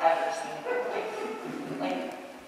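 A person's voice talking.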